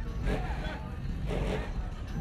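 Indistinct voices talking over the low, steady rumble of a car engine as a car rolls slowly past at walking pace.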